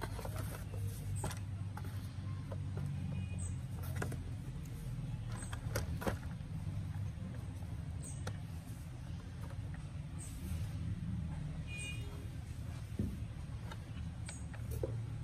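Scattered light knocks and clicks of a picture frame and its backing board being handled and set down in a cardboard box, over a steady low hum.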